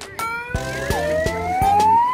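Handheld megaphone's siren wailing, rising steadily in pitch, over background music with a beat.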